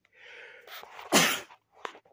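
A person sneezing: a drawn-in breath for about a second, then one short, loud burst. A faint click follows near the end.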